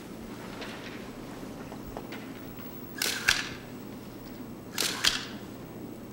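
Still-camera shutters firing twice during a posed photo, about two seconds apart, each shot a quick double click.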